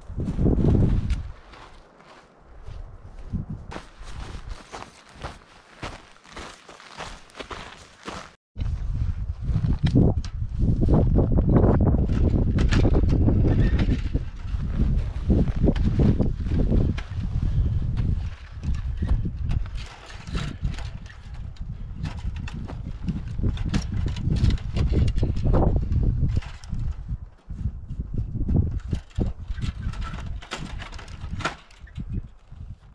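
A hiker's footsteps on dry grass and forest floor. After a sudden break about eight seconds in, a loud, uneven low rumble of wind buffeting and handling noise on the microphone, with short scrapes and knocks, while the barbed-wire fence is handled.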